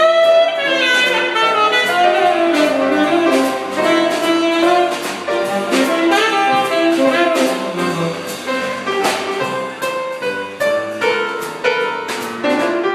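Live jazz trio: a tenor saxophone plays a melodic line over piano chords and drums, with steady cymbal strokes running through.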